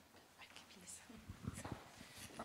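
Near quiet in a meeting room: faint low voices and a few soft thuds in the second half, the handling noise of a microphone being passed from hand to hand.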